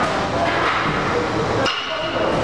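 A 225 lb barbell set down on the gym's rubber floor at the bottom of a deadlift rep: one impact with a metallic clink of the plates about 1.7 seconds in, over steady gym background noise.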